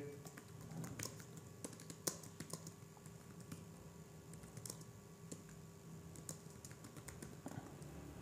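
Faint typing on a computer keyboard: irregular, scattered keystroke clicks.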